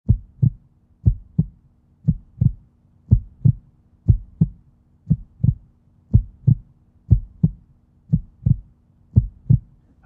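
Heartbeat sound effect: paired low thumps, a lub-dub about once a second, ten times over, above a faint steady hum.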